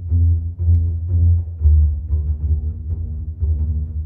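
Sampled double basses from the Spitfire Chamber Strings library playing a run of low notes, a new note about every half second.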